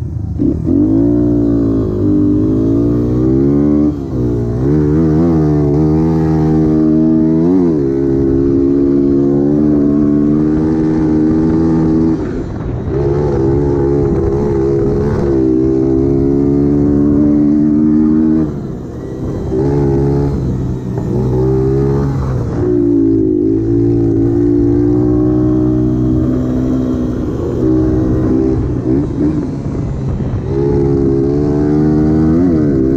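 Honda XR100's air-cooled single-cylinder four-stroke engine heard from on board while lapping a dirt flat track, revving up along the straights and dropping off several times as the throttle is rolled off into the corners.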